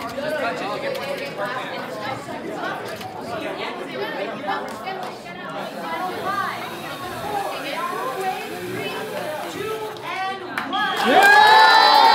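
Crowd of spectators chattering, many overlapping voices. About a second before the end it swells into loud shouting and cheering.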